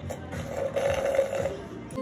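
Background music, with a woman's short 'oh' about half a second in.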